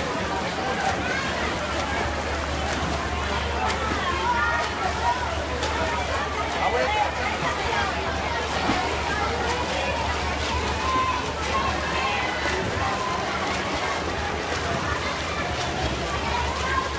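Many overlapping voices of spectators shouting and calling in an indoor pool hall, over the continuous splashing of swimmers' strokes in a race.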